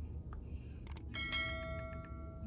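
A subscribe-button sound effect: two quick mouse-style clicks, then about a second in a bright notification-bell chime of several tones that keeps ringing. A low hum lies underneath.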